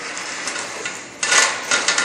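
Steel roller chain clinking and scraping against the stainless steel conveyor frame as it is fed along by hand. A louder rough scrape comes a little past halfway, followed by a few sharp clicks.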